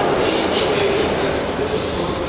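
Running noise of a Hayabusa Shinkansen heard from inside a passenger car: a steady rushing noise with a faint steady tone under it.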